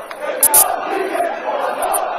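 A large crowd of angry football fans shouting and chanting together in protest. A couple of sharp knocks come about half a second in.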